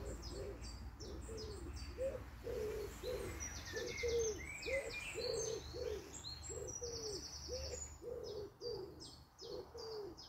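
Small songbirds chirping, with a couple of fast high trills, over a steady series of short, low notes about twice a second and a faint low rumble.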